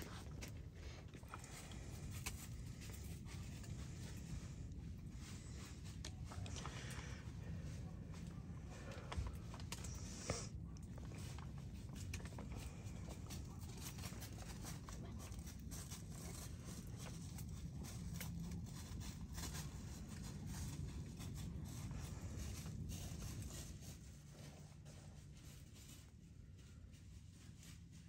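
Faint crackling and ticking of a small scrap-wood fire, over a low steady rumble of wind.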